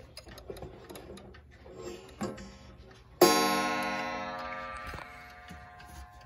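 A wall clock's brass chime rods struck, once lightly about two seconds in, then hard about three seconds in, ringing out in a bright metallic tone that fades slowly over a few seconds. Small ticks and knocks from the clock come before the strike.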